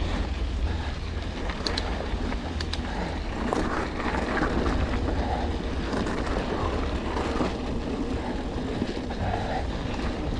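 Mountain bike ridden along a rocky dirt trail: a steady low rumble of wind on the GoPro's microphone, with tyre noise on gravel and a few sharp clicks and rattles from the bike going over stones.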